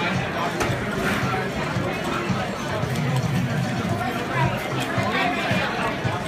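Busy restaurant dining room: many people talking at once in a steady hubbub of chatter.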